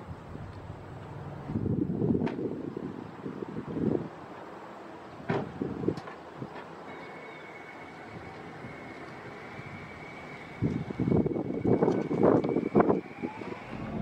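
Car doors shutting with a few sharp thuds as a Toyota Prius is boarded and pulls away quietly, with gusts of wind buffeting the microphone.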